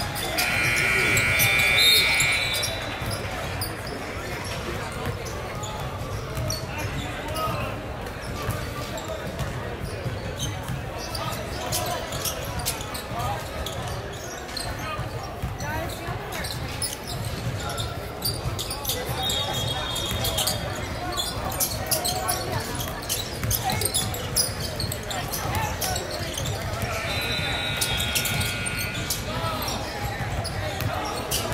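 Basketball game sounds echoing in a gym: a basketball dribbling and bouncing on a hardwood court, with sneakers and indistinct shouts from players and spectators. A high held tone lasting about two seconds comes at the start and is the loudest thing, and similar tones come again twice later.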